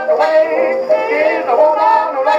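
A 1924 acoustic-era hot jazz band record played on an Edison Diamond Disc phonograph. The band plays on with a thin, narrow sound and almost no deep bass.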